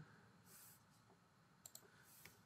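Near silence with two or three faint computer mouse clicks near the end, as a drop-down menu on screen is opened and changed.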